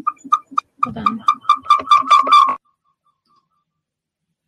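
Audio feedback loop between two computers on the same call: a string of short squeaky chirps at one pitch, coming faster and faster with garbled voice mixed in, cut off abruptly about two and a half seconds in when the sound is switched off.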